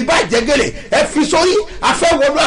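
A man's voice, loud and animated, its pitch swooping up and down in short phrases.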